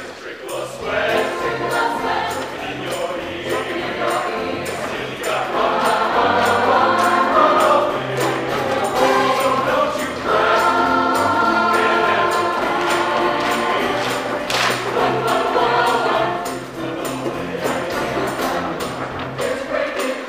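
Mixed show choir singing in harmony over a steady beat, the voices louder through the middle and easing back a few seconds before the end.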